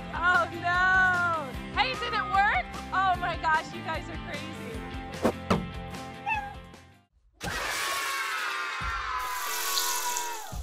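Children shrieking and cheering over background music for the first few seconds. After a brief drop-out, a falling swoosh sound effect with a bright hiss near its end.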